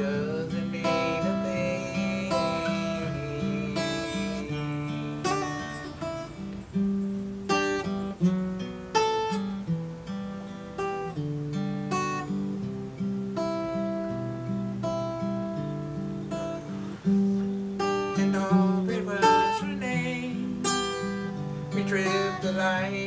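Martin HD-28 dreadnought acoustic guitar played solo, chords picked and strummed in a gentle ballad pattern, with a few louder accented strokes about a third of the way in.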